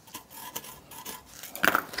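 Pencil scratching a mark onto a pine 2x4, with small clicks and rubs as the board is handled on the cardboard template.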